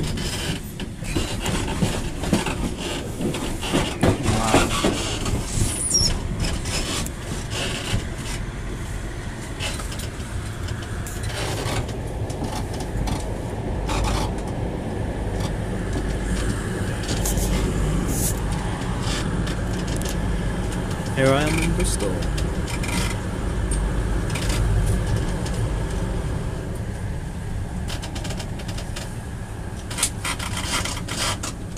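Train noise at a station: a passenger train running in, then a CrossCountry train moving off past the platform, with a steady rumble, a brief high squeal early on, and a rising whine about two-thirds of the way through as it pulls away.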